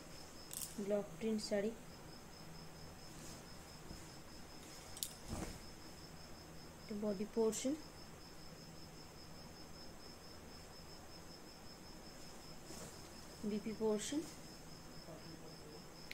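A cricket chirping in a steady, fast pulsing trill, with a few brief soft words, several light clicks and one dull thump about five seconds in.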